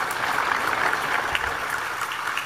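Steady applause, many hands clapping together.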